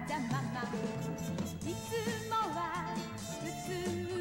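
A children's TV pop song with a wavering sung melody over a bass line, drums and band accompaniment.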